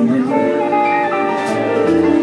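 Live jazz quartet playing, with a guitar prominent among held notes.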